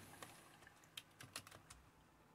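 Faint keystrokes on a Compaq CQ45 laptop keyboard: a few separate key clicks as a short terminal command is typed and entered.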